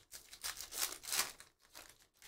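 A foil trading-card pack wrapper torn open and crinkled by hand: a run of sharp crackling rustles, loudest in the middle.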